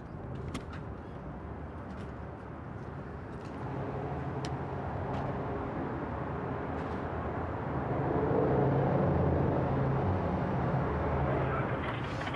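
City street traffic: motor vehicles passing, growing louder about four seconds in and again about eight seconds in, with a few light clicks near the start.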